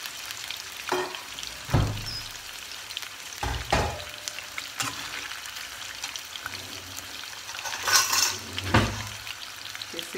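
Chicken pieces sizzling as they fry in hot oil in a wok. A slotted steel spatula knocks and scrapes against the pan about half a dozen times as the pieces are stirred, loudest near the end.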